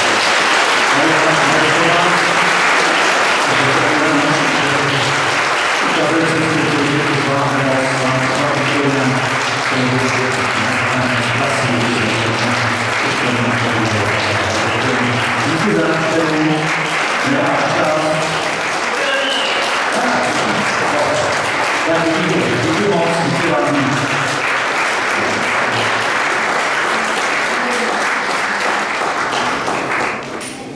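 Audience applauding steadily and at length after a concert's final song, cut off abruptly near the end.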